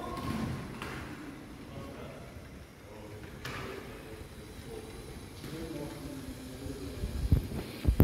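Faint, indistinct voices of people talking in a large hall, with two low thumps near the end.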